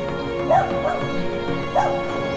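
Background music playing steadily, with a dog barking three short times over it, the loudest near the start and near the end.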